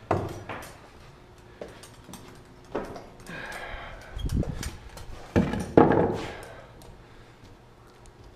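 Footsteps and knocks of wood on plywood stair treads and subfloor as a cut block of lumber is handled, with a short scraping rustle about three seconds in and two loud thumps about five and a half to six seconds in.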